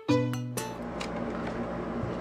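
Background music with short plucked notes that cuts off about half a second in, followed by a steady hiss with a low hum.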